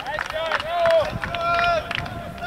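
Voices shouting calls across a football pitch, with two long drawn-out shouts in the middle, among scattered short knocks.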